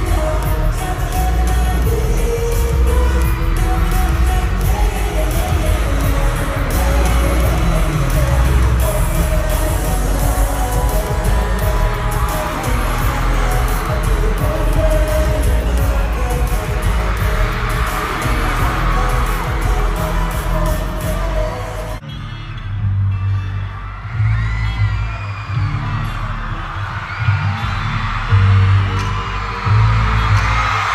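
Live pop concert sound recorded from the audience: loud amplified music with a heavy bass beat, singing and crowd voices. About two-thirds of the way through it cuts abruptly to a quieter stretch of deep bass pulses with high voices over them.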